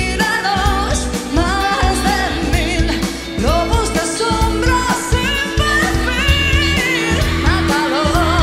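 Female lead singer singing in Spanish with a strong vibrato, over a live rock band with electric guitar and drums.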